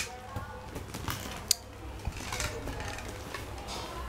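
A few sharp taps and knocks on a bamboo sleeping mat, one right at the start and a sharper one about a second and a half in, over faint background voices.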